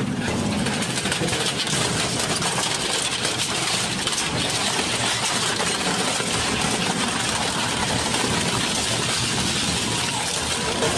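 Twin-shaft shredder running steadily under load, its cutter shafts tearing up a spoked bicycle wheel and then a sheet-metal tray, with continual crunching and cracking of metal.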